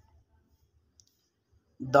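Near silence with one short, faint click about halfway through, then a man's voice starts speaking in Hindi just before the end.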